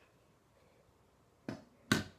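Quiet room tone, then two sharp knocks near the end, about half a second apart, the second louder.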